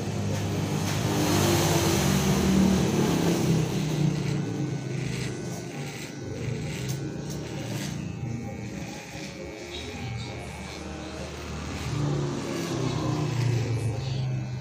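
Corded electric hair clippers buzzing as they trim along the jaw and neck. A louder rushing swell builds over the first few seconds and then fades.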